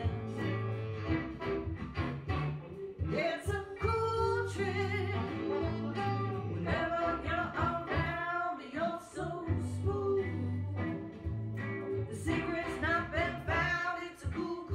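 Blues-groove song with female lead vocals over guitar and a steady bass line, an unmixed studio recording played back.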